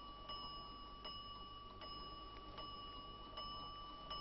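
Gilt mantel clock ticking faintly, about one tick every three-quarters of a second, over a steady high ringing tone.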